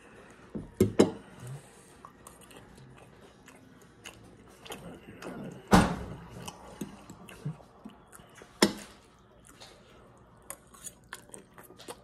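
Someone eating spaghetti close to the microphone: chewing and mouth sounds with scattered small clicks, and three louder sharp clinks of a fork, about a second in, near six seconds and near nine seconds.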